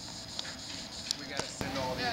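Indistinct voices talking in the background, with a few short, sharp knocks in the second half.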